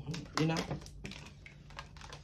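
A woman's voice says "you know", with a few light clicks or taps under and after it.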